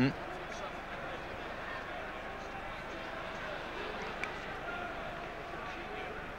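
Steady crowd noise in a football stadium during open play: a low murmur of many distant voices, with a faint click about four seconds in.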